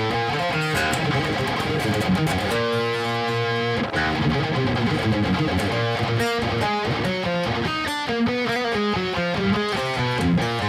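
Electric guitar tuned down to E-flat, played through an amp in quick runs of notes with one chord held for about a second and a half. The playing tests the string action after the bridge has been raised to stop high bends from dying out.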